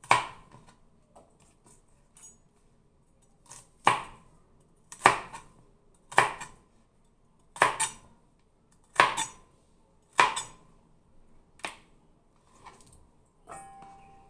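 Chef's knife chopping celery on a plastic cutting board: about eight sharp, separate chops a little over a second apart. Near the end, a short metallic clink that rings briefly.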